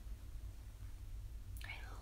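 A pause in soft, near-whispered speech: mostly a low steady hum under faint room noise, with the woman's quiet voice starting again near the end.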